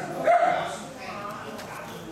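A dog's high-pitched whine: a short flat note about a quarter second in, followed by fainter whimpering.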